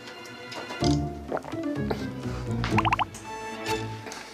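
Light background music, with four quick rising bloops, a cartoon water-drop sound effect standing in for gulps of water, close together near the three-second mark.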